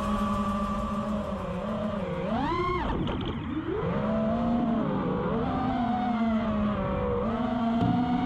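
An FPV racing quadcopter's brushless motors (2207.5 size, 2500Kv) with spinning props make a steady buzzing whine. Its pitch follows the throttle: it swoops sharply up and back down about two and a half seconds in, then settles. Near the end it climbs again as the throttle is pushed.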